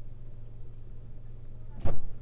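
Steady low rumble of a car running at a standstill, heard from inside the cabin, with one loud sharp thump near the end.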